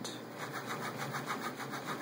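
Stepper motors of a mUVe 1 3D printer driving its x and y axes back and forth very fast, a steady mechanical buzz broken into rapid, even pulses as the axes reverse.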